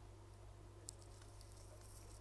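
Near silence: a steady low hum of room tone, with one faint small tick about a second in.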